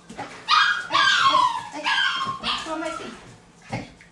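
Shiba Inu puppy giving loud, high-pitched whining cries, about four in a row with falling pitch, while tugging on a rope toy. A single thump near the end.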